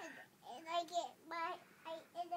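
A young boy's voice in three short sing-song phrases, with held, level notes and short gaps between them.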